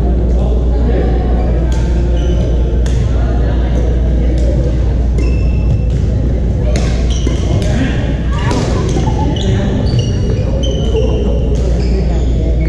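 Busy badminton hall: sharp clicks of rackets striking shuttlecocks and short high squeaks of court shoes on the wooden floor, more of them in the second half, over background chatter of players and a steady low hum.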